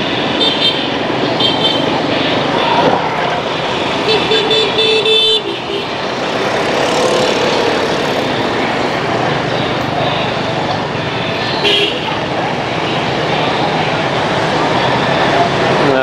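Dense city street traffic, mostly motorbikes with some cars, running steadily. Horns toot several times: two short toots in the first two seconds, a longer one about four seconds in and another brief one near twelve seconds.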